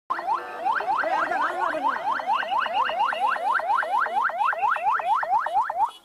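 Police vehicle siren on a fast yelp: each wail rises sharply and drops back, about four times a second, then cuts off just before the end.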